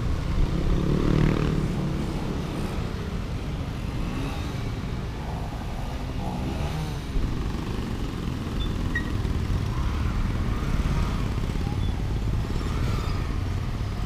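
A motorcycle's engine running as it rides in city traffic, a steady low rumble with brief swells in pitch as the throttle changes.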